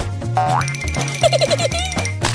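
Background music with a steady low beat, overlaid by a cartoon boing sound effect: a springy rising glide about a third of a second in, followed by a held high tone with quick wavering notes.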